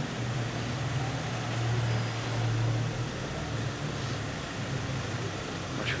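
Steady low motor hum, swelling between about one and three seconds in, over a haze of outdoor street noise.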